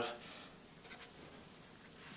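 Faint felt-tip marker writing on paper, with a couple of short strokes about a second in.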